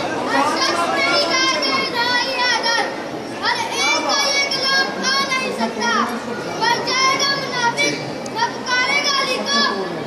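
Speech: raised, high-pitched voices with short pauses.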